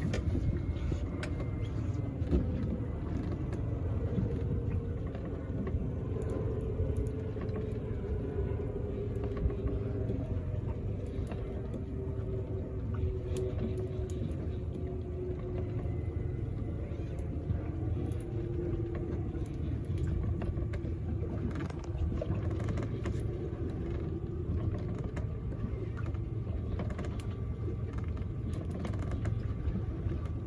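Electric deep-drop reel winding in line under the load of a hooked fish: a faint motor whine that slowly sags in pitch, over a steady low rumble.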